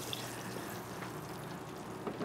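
Hot frying oil in a cast iron pan sizzling steadily on an induction burner, just after the fried fish has been lifted out.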